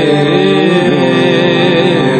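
Male voice singing a slow, ornamented line of a Marathi devotional song over a steady instrumental drone.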